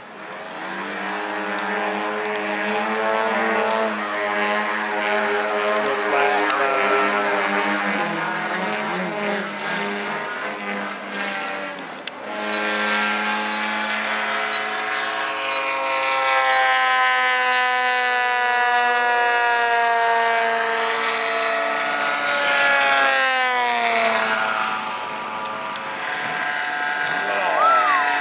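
Gas engines of two 120cc RC aerobatic planes running in flight, a buzzing drone whose pitch rises and falls with throttle and as the planes pass. A long falling sweep comes a little after two-thirds of the way in, and another swoop near the end.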